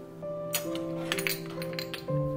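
A cluster of small glass clinks and clicks from about half a second in, as an amber glass bottle is handled and its cap twisted off. Soft background music with sustained notes plays underneath.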